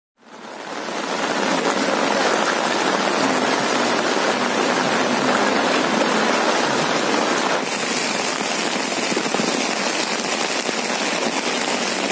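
Heavy rain pouring onto a flooded road, a steady loud hiss that fades in at the start.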